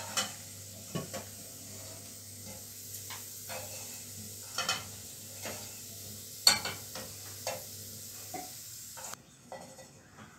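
Slotted plastic spatula scraping and knocking against a non-stick frying pan as fried sweet potato cubes are scooped out, over a soft sizzle of hot coconut oil. The knocks come every second or so, the loudest about six seconds in, and the sizzle drops away near the end.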